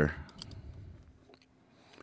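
A few faint computer mouse clicks: a small cluster near the start and a couple more about halfway through, as a file is dragged into a folder.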